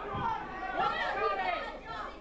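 Indistinct chatter of several people talking at once, with a dull low thump near the start.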